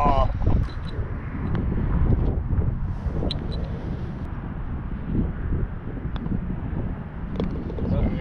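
Wind buffeting the microphone on an open golf green, a steady low rumble, with a few faint small clicks.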